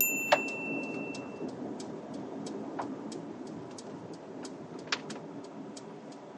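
Steady low road and engine hum inside a car's cabin as it slows at low speed, with faint regular ticking. A short high electronic beep and a sharp click come right at the start.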